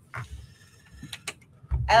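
A plastic Lego helicopter handled and set down on a wooden table: a short soft rustle, then a couple of light sharp clicks about a second in.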